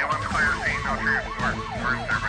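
Emergency-vehicle siren in yelp mode, its pitch sweeping rapidly up and down about four times a second.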